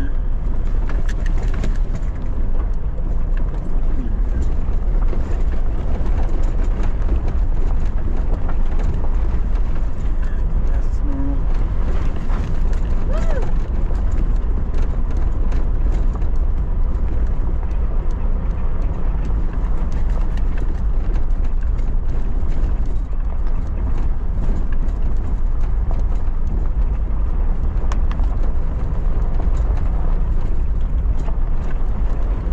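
Four-wheel-drive vehicle driving on a gravel dirt road: a steady low rumble of engine and tyres, with scattered crackles of gravel and small rattles throughout.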